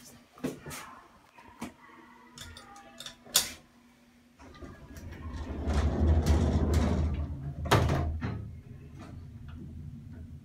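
Old elevator door sliding shut: a few light clicks and knocks, then a loud low rumble lasting about four seconds that ends in a sharp clunk as the door closes, followed by a low steady hum.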